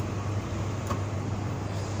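Steady low hum and even background noise of an indoor space, with one faint click about a second in.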